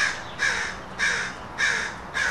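A bird outside giving three short, harsh calls in a row, about half a second apart.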